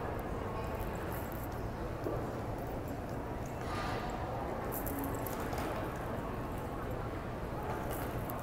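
Steady background noise of an airport terminal: an even hum and hiss with no distinct events.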